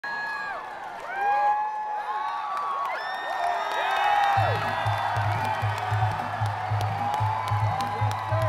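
Concert crowd cheering and whooping, many rising and falling calls overlapping. About four seconds in, the band's low rhythmic bass pulse comes in at a few beats a second under the cheering, as the first song begins.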